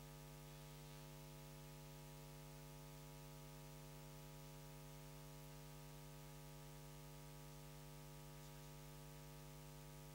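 Near silence: a faint, steady electrical hum with a stack of overtones.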